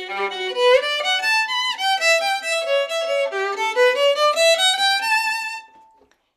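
Solo violin played with the bow: a flowing melody of separate notes that climbs in a run to a held high note, which fades away just before the end.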